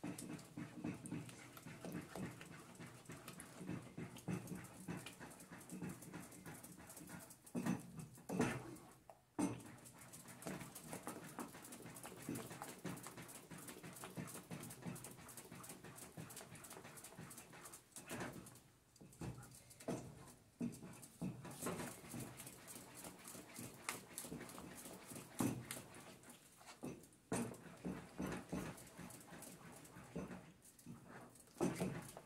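Wooden spoon stirring thick chocolate pudding in a saucepan: a steady run of faint, wet scraping strokes against the pan.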